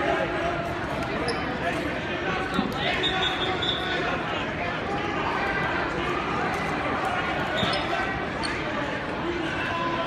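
Many overlapping voices echoing in a gymnasium crowd, with scattered thuds and a short high whistle about three seconds in.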